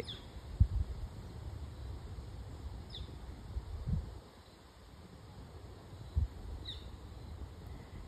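A few faint, short bird chirps, each a quick downward note, spaced a few seconds apart over a low outdoor rumble, with three brief soft low thumps.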